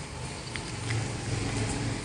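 Outdoor background noise picked up by a smartphone's microphone: a steady low rumble with a faint haze of noise and a few light ticks.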